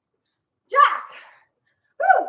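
A woman calling out a single short word about a second in, with silence around it.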